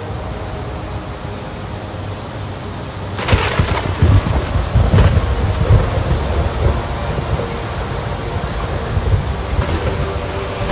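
Thunderstorm sound effect: a steady rain hiss, then about three seconds in a sharp thunderclap that breaks into a long, heavy low rumble, with a second crack about two seconds later.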